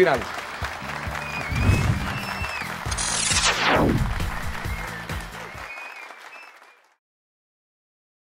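Audience applause over a short music sting with steady low bass notes, and a falling whoosh sweeping down about three seconds in; it all fades out to silence about a second before the end.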